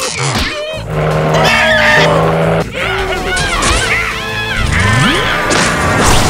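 Cartoon sound mix: the larva characters' high, wavering squeals and screams over music, with car and tyre-skid sound effects.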